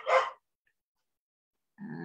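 Speech only: a voice finishes a word, then about a second and a half of dead silence, then a drawn-out "uh" begins near the end.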